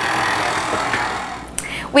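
Stand mixer running at low speed, its paddle cutting cold butter into flour for a pie crust dough: a steady motor hum with a rattling haze that fades gradually toward the end.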